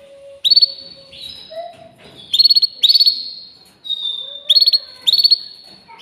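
Canary chirping and trilling: short bursts of rapid high notes, about six in a row about half a second apart, with one longer held high note about four seconds in.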